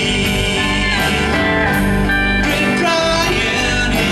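Country song performed live: a man singing with acoustic guitar accompaniment.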